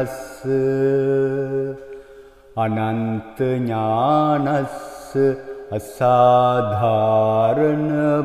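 A man's voice chanting a Sinhala Buddhist protective mantra in slow melodic recitation, with long held notes and gliding pitch. There is a lull about two seconds in before the next phrases.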